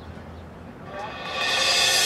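Drum corps brass section entering on a sustained chord about a second in and swelling in a steady crescendo to loud.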